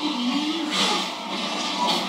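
TV drama soundtrack of a fight scene: a soldier's brief yelp at the start, then noisy bursts of the scene's action.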